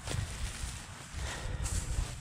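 Dry hay rustling and crackling as fingers pick loose baler twine scraps off a small square hay bale, with a few light ticks over an uneven low rumble.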